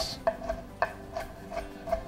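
Chef's knife chopping tomato on a wooden cutting board: a series of short sharp strokes of the blade on the board, roughly three a second.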